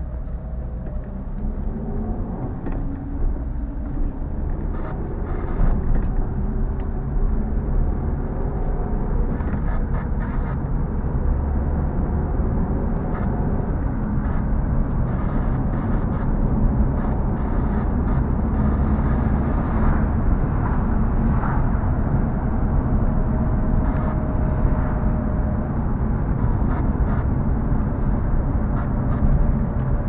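A car's engine and tyre rumble heard from inside its cabin while driving, with the engine note rising as the car picks up speed in the first few seconds.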